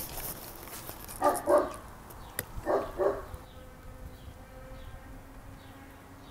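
A dog barking: two quick pairs of barks, about a second and a half apart, with a single sharp click between them.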